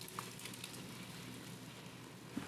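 Faint, steady sizzling of tomato paste browning in an enameled Dutch oven as grated tomatoes are poured in.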